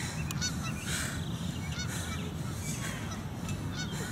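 Birds calling outdoors: many short arched calls, repeating irregularly, over a steady low hum.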